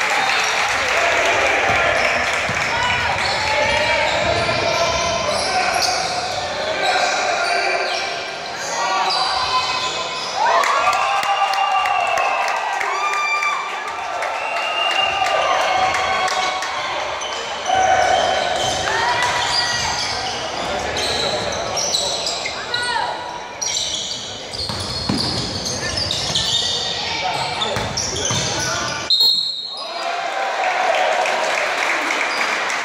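Basketball being dribbled and sneakers squeaking in short sharp squeals on a hardwood gym floor, with indistinct voices echoing around a large hall.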